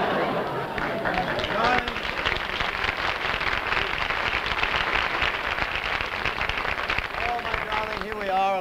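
Live studio audience laughing and applauding, a dense rattle of many hands clapping that holds for several seconds and thins out near the end.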